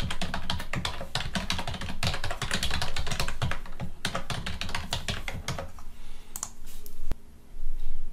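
Typing on a computer keyboard to enter sign-in details: a fast, continuous run of keystrokes for about six seconds, then a few scattered key presses near the end.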